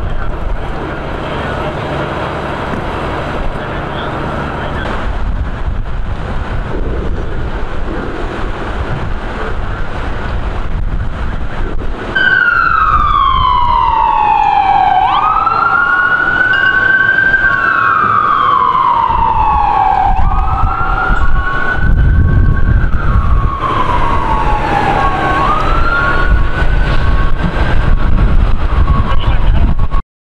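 Emergency vehicle siren wailing from about twelve seconds in, its pitch sliding slowly down and then quickly back up about every five seconds. A steady beeping tone runs alongside it. Before the siren, wind on the microphone and a low rumble.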